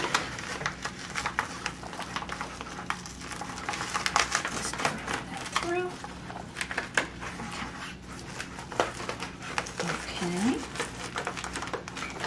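Hook-and-loop (Velcro) strip being pressed closed along the edges of a softbox's fabric diffusion panel: an irregular run of small crackles and rasps, with fabric rustling.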